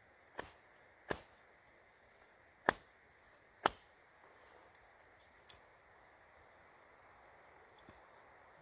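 A handful of sharp, separate woody knocks and snaps at irregular times, from sticks and a knife being handled and cut, the loudest two about a second apart near the middle, over a quiet background.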